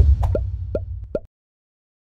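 Logo sting sound effect: a deep bass hit dies away under three short water-drop plops, about 0.4 s apart, and all of it cuts off a little over a second in.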